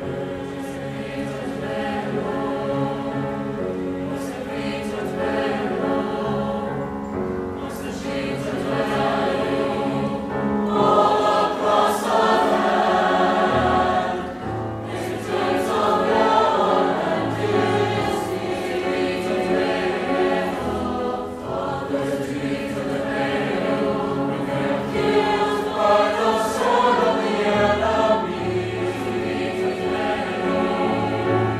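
High school mixed concert choir singing a sustained choral piece, swelling louder about eleven seconds in.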